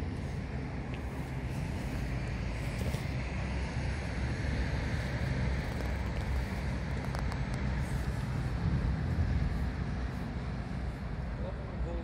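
A steady, low engine drone with an outdoor rumble, unchanging throughout.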